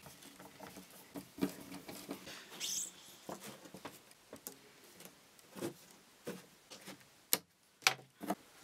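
Light handling sounds of picture-hanging work: scattered small clicks, scrapes and rustles of twine and a small screw being worked on the hardboard back of a picture frame. Two sharp clicks come near the end.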